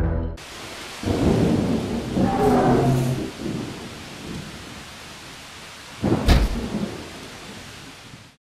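Thunderstorm sound effect: steady rain, with a long rumble of thunder in the first few seconds and a sharp thunderclap about six seconds in whose rumble trails off.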